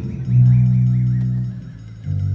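Improvised live music: a bass sounds one long low note, starting about a third of a second in and fading out near the end, with a faint wavering higher line above it.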